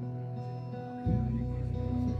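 A live band playing, with guitars over held notes; about a second in, a deep bass note comes in and the music grows louder.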